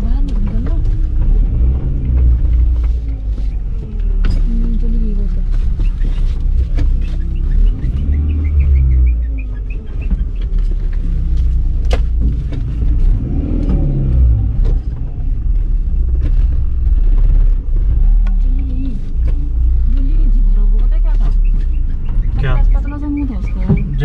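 Steady low road rumble of a car driving, heard from inside the cabin, with muffled voices or music over it.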